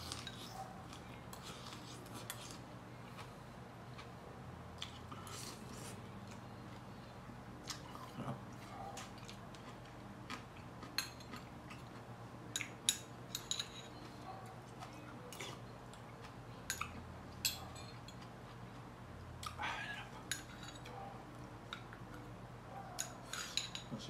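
Metal spoon scooping soup from a small ceramic bowl: scattered light clinks and scrapes, most of them past the halfway point, over a steady low hum.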